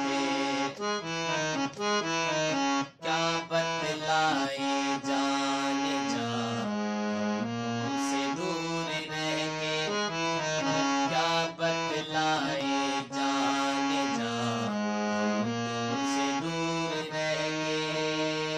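Harmonium playing a Hindi film-song melody, the notes stepping from one to the next over lower held notes.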